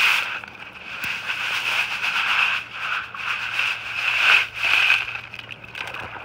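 Wet river gravel and sand being tipped out of a mesh bag onto a wire-mesh screen: stones rattling and shifting in uneven surges, with a sharp click about a second in.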